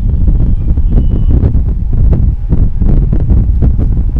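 Loud rustling rumble of a clip-on microphone rubbed by clothing as the arm moves, with irregular scratchy strokes of a marker writing on a whiteboard.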